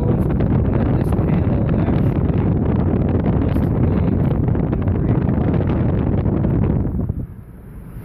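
Wind buffeting the microphone: a loud, steady rushing rumble that drops away about seven seconds in.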